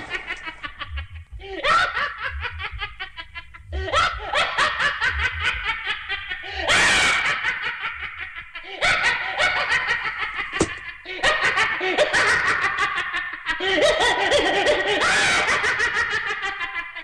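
A cartoon witch's voice cackling with laughter, in about seven long bouts, each broken by a short pause for breath.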